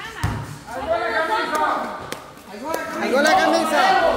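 Several people talking and calling out at once under a large covered hall's metal roof, with a single low thump just after the start.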